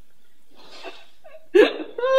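A woman sobbing: a breathy intake of breath about halfway through, then a sharp, gasping sob near the end that breaks into a wail.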